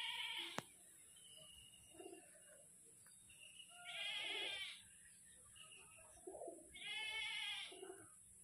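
A goat bleating twice, each call lasting about a second, once about four seconds in and again near the end.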